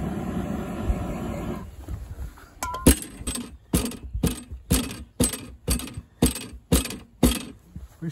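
A handheld gas torch hisses steadily for about the first second and a half. Then come about ten sharp knocks, roughly two a second, as the heated end of black poly pipe is shoved, stroke by stroke, onto the hydrant's barbed fitting.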